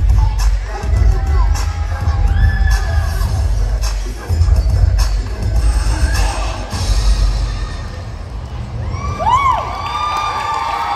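Dance music with a heavy bass beat, with an audience of children shouting, cheering and whooping over it. The beat drops away about eight seconds in, and the whoops and cheers grow near the end as the routine finishes.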